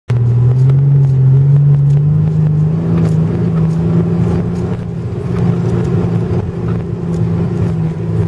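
Mitsubishi Pajero's engine heard from inside the cabin, running steadily under load as the 4WD drives through soft sand; its pitch rises a little over the first two seconds. Light knocks and rattles are scattered through it.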